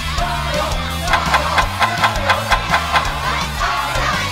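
Upbeat background music with a steady bass line; from about a second in, a fast, even run of bright strokes, about six or seven a second, plays until near the end.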